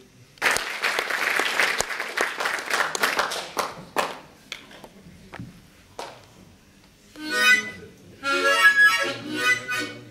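An audience applauds for about four seconds, the clapping thinning out. Near the end a harmonica plays two short chordal phrases.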